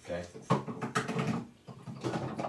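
A man speaking briefly; no other clear sound stands out.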